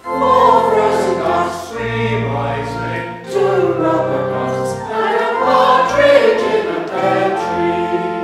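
Church choir singing, with a brief pause for breath between phrases at the start.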